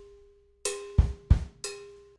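Drum kit playing slowly: a cowbell note rings and dies away, then the cowbell is struck again, two quick bass drum kicks follow, and the cowbell is struck once more. This is beat three of a funk groove, played as 'cowbell, kick, kick, cowbell'.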